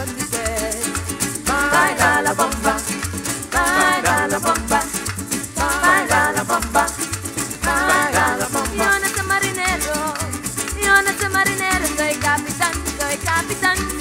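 Trinidad parang band music: strummed cuatros and guitar with shaken maracas over a steady bass beat, and a melodic line running over it.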